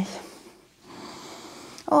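A woman's deep breath in, a soft rushing sound of about a second, picked up close by a clip-on microphone.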